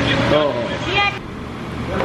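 A child's high-pitched voice speaking for about a second over a steady background hum of a busy room, then cut off suddenly, leaving only the quieter hum.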